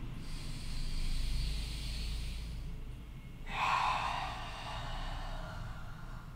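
A woman's slow, audible yoga breathing while she holds a forward fold: a long soft breath, then a louder, fuller breath starting about three and a half seconds in.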